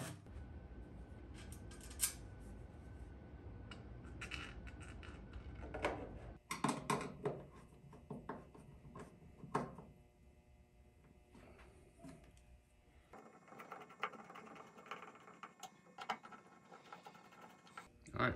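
Scattered clicks and knocks of small hard parts being handled and set in place, irregular and light, over a low hum that drops away about a third of the way in.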